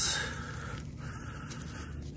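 A hand rummaging and scraping in dry stalks, roots and sandy debris around a buried glass jar, with a brief scrape at the start over a steady background hiss.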